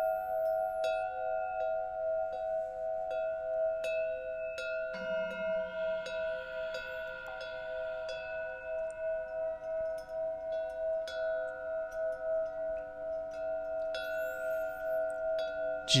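Background meditation music of long, steady bell-like chime tones with a soft tick about every two-thirds of a second. New tones join about five seconds in.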